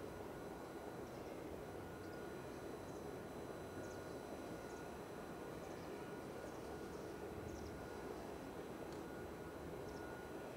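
Faint outdoor ambience: a steady low hum with scattered faint, short high chirps.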